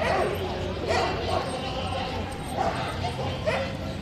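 Dogs barking several times, short sharp barks, over the steady chatter of a crowd.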